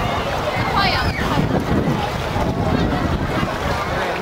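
Wind buffeting the microphone in a steady low rumble, with the faint voices of a crowd behind it.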